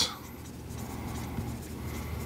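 Dry-erase marker writing a word on a whiteboard, its tip rubbing quietly against the board.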